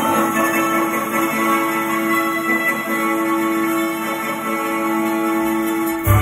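Recorded orchestral music played loudly through a replica JBL L-300 floor-standing speaker: a long chord with one strong note held almost to the end.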